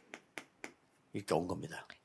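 Chalk clicking against a chalkboard as numbers are written: a handful of short, sharp taps in the first second, then a man's voice speaking quietly.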